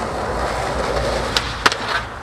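Skateboard wheels rolling on asphalt, a steady rumble, followed by a few sharp board clacks near the end as the skater gets up onto a concrete ledge.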